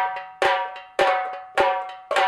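Background music of a bright struck percussion note, like a bell, repeated four times about half a second apart, each note ringing and fading out before the next.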